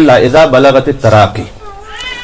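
A man reciting a Quranic verse in Arabic in a melodic chant, amplified through a microphone, his voice sliding up and down in pitch and softening into a quieter wavering held note near the end.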